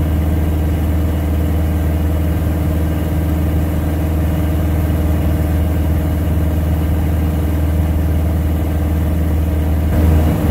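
Piper Super Cub floatplane's engine and propeller droning steadily in level flight, heard from inside the cockpit. Pitch and loudness stay constant throughout.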